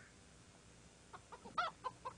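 Chickens clucking: a quick run of short clucks starting about a second in.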